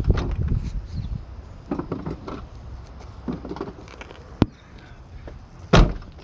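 Faint, indistinct voices over a quiet background, with a single sharp click about four and a half seconds in and a louder knock just before the end.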